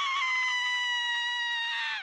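A long, high-pitched held cry, like a voice stretched into a scream, its pitch sliding slowly down and cutting off near the end.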